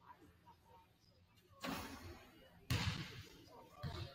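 Basketball bouncing on a hardwood gym floor: three separate bounces about a second apart, the second the loudest, each echoing in the large hall.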